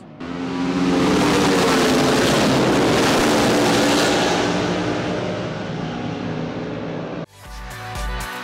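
Racing motorcycles passing at speed on a closed road circuit, their engines building over the first few seconds and easing away. The sound cuts off abruptly about seven seconds in, and music with a beat takes over.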